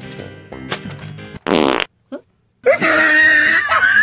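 Background music, cut off by a short, loud comic sound effect with a wavering pitch. After a brief dead silence comes a second, longer and rougher loud burst near the end.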